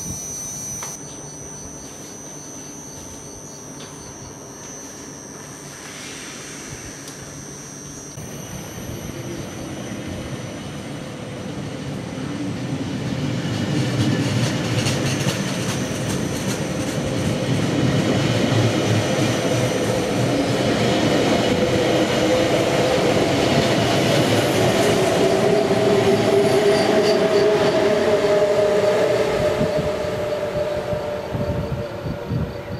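BLS push-pull passenger train pulling out past the platform: quiet at first, then the coaches' wheel and track noise grows steadily louder as the train picks up speed. Near the end the BLS Re 465 electric locomotive pushing at the rear passes, adding a pitched whine from its traction motors over the rolling noise.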